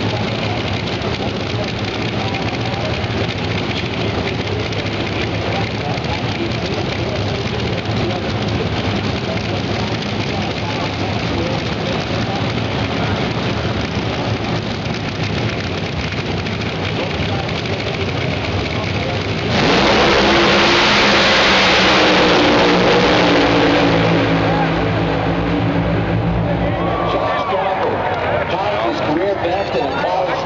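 Drag racers launching off the starting line at full throttle: a sudden loud blast of engine noise about two-thirds of the way in that holds for a few seconds and then fades as they run away down the strip. Before it, a steady din of engines and voices at the line.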